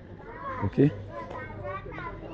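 Speech: a man says a brief "ok", with children's voices in the street around him.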